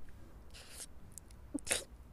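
Noodles being slurped from a pot: a softer slurp about half a second in and a louder one near the end.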